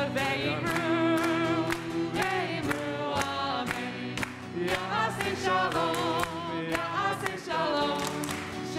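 Voices singing a song together, with hands clapping along to the beat at about two to three claps a second.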